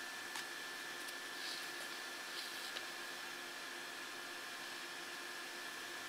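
Quiet room tone: a faint steady hiss with a faint steady whine running under it, and a few soft clicks.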